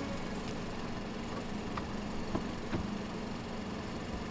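A BMW sedan's engine running low and steady as the car stands at the curb, with a few light clicks about two to three seconds in as the rear door is opened.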